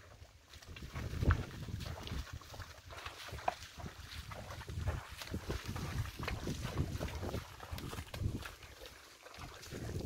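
Water buffalo pulling a wooden cart through wet mud: irregular squelching, splashing and knocking from the hooves and cart, the loudest knock about a second in, with wind rumbling on the microphone.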